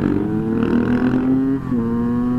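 Motorcycle engine running at a steady pitch while riding, sagging slightly, then dropping a step near the end and holding there.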